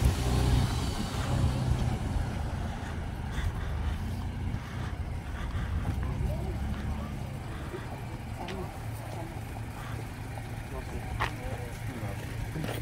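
Car and pickup truck engines running as the vehicles roll slowly past at close range: a low rumble, loudest at the start, that gradually fades.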